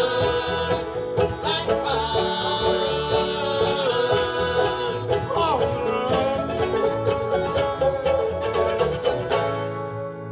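Live bluegrass band playing: banjo, acoustic guitars and upright bass. The tune ends near the end on a final ringing chord.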